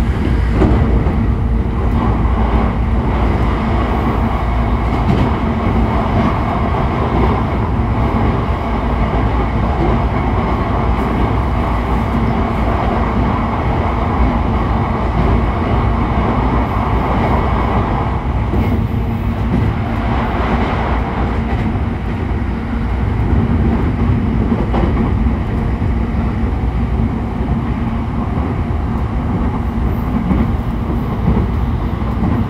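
JR East E531 series electric train heard from inside a motor car (MoHa E531), running steadily at about 90 km/h: a continuous rumble of wheels on rail with motor and running noise.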